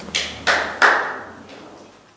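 Three sharp taps about a third of a second apart, the last the loudest, each with a short ring, picked up by the lectern microphone; the sound then fades out.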